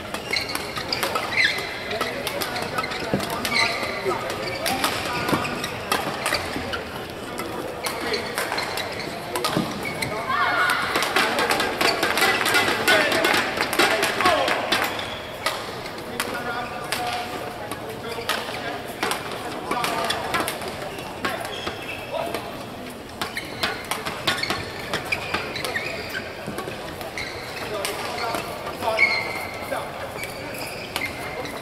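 Badminton rally: rackets strike the shuttlecock in sharp cracks, and shoes squeak in short chirps on the court floor. Voices echo around the hall, loudest about ten seconds in.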